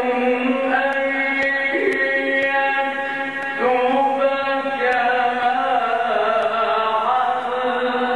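A male Quran reciter chanting in the melodic Egyptian mujawwad style into a microphone. He holds long, ornamented notes that glide up and down, and starts a new phrase a little past halfway.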